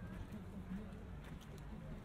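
Indistinct chatter of people walking close by, with light footsteps on a paved path over a steady low outdoor hum.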